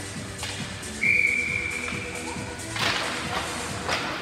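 Hockey referee's whistle: one shrill, steady blast starting suddenly about a second in and lasting about a second and a half, heard over arena music. A couple of sharp knocks follow near the end.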